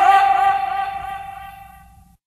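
A man's voice drawing out the last vowel of 'Flamengo' in one long held note with a slight waver, fading away toward the end.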